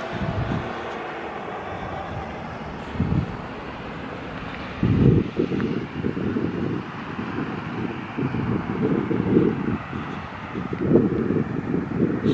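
Wind buffeting the microphone in irregular gusts, heavier from about five seconds in, over a faint steady outdoor hiss.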